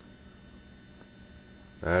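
Quiet indoor room tone: a low, steady electrical hum with a faint high whine. A man starts speaking near the end.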